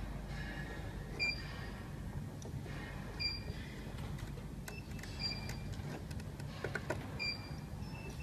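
A short high beep repeating evenly about every two seconds over a low steady hum, with a few light clicks of hands handling metal parts in the second half.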